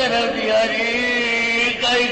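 A voice chanting or singing long held notes that waver slightly, with a brief break and a new note near the end.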